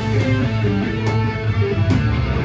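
Live rock band playing a loud instrumental passage with no singing: distorted electric guitar and bass guitar.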